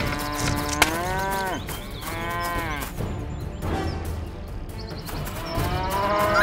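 Cows mooing: a long moo held level before its pitch lifts and falls, a second arched moo, and a third starting near the end. A sharp click about a second in.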